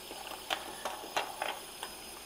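A handful of light, sharp clicks and taps as a plastic spout piece is fitted back into a stainless-steel pet fountain lid and screwed on.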